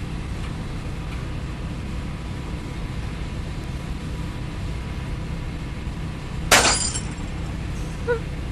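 A steady low drone, with a sudden loud crash like glass shattering about six and a half seconds in that rings for about half a second: a sound effect in the creepy ending of a dark track.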